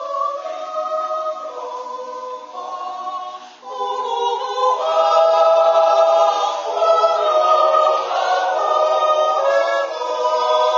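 Swiss yodel choir of men and women singing a Jutz, a wordless yodel, a cappella in held chords. After a short break for breath a few seconds in, the chord comes back louder and fuller.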